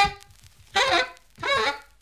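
Grafton plastic alto saxophone playing two short, separate notes about two-thirds of a second apart, each bending in pitch, with silence between them.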